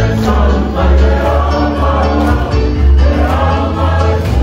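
Choir singing together over an amplified accompaniment with a strong bass line.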